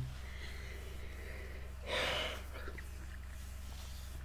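A pause in a man's talk: a steady low hum, and about two seconds in a single short, audible breath.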